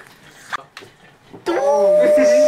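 After a quiet pause of about a second and a half, a person's voice starts a high, drawn-out whining note that rises and then holds steady.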